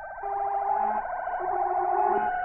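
Synthesizer electronica: steady held synth tones over a fast, evenly repeating sequenced ripple, with lower bass notes changing every half second or so. The level dips right at the start and builds back up.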